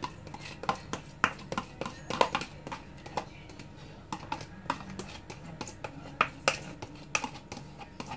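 Irregular light clicks and taps of a utensil and a small plastic container against each other and against a glass baking dish, as a topping is spooned over an unbaked gratin.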